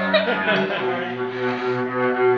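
A beginner's alto saxophone giving a low, steady honk of about a second and a half, starting about half a second in: a fart-like note from a child who cannot yet get a proper tone.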